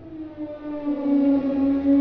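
Animated T-Rex roar sound effect played by the Adobe Aero augmented-reality app: one long, deep roar at a steady pitch, growing louder.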